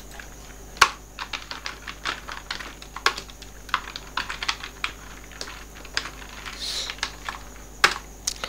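Computer keyboard typing: irregular keystrokes in quick runs, with a few louder key strikes about a second in, about three seconds in and near the end.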